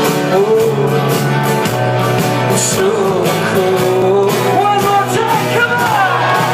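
Live rock band playing a song: a male lead voice singing over strummed acoustic guitar, electric guitar, bass guitar and a steady drumbeat.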